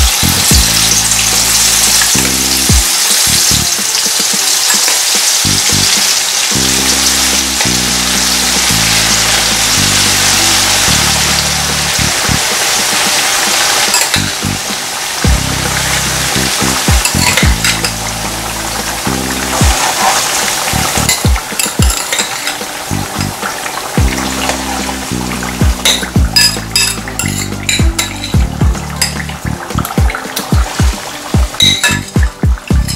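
Seasoned ripe plantain pieces deep-frying in a pan of hot oil, a loud steady sizzle that thins after about fourteen seconds. A metal spoon stirs in the pan, with sharp clicks against it near the end. Background music plays under the frying.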